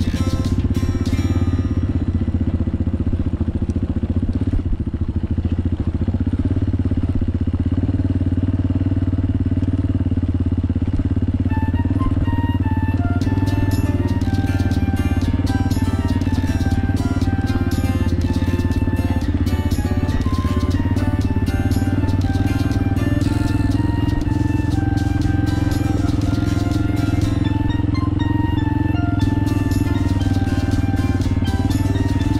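Honda XLR200R single-cylinder four-stroke engine running steadily as the dirt bike rolls down a gravel road, mixed with background music; a melody of short notes comes in about halfway through.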